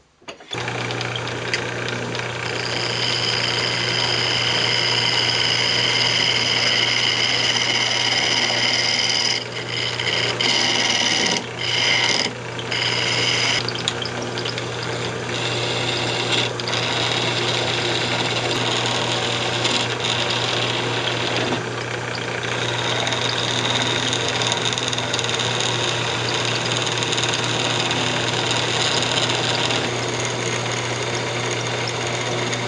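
Wood lathe switched on about half a second in and running with a steady motor hum, while a hand-held turning tool cuts the spinning cocobolo blank with a high, even cutting sound. The cutting sound breaks off briefly several times between about 9 and 14 seconds, as the tool leaves the wood, then runs on.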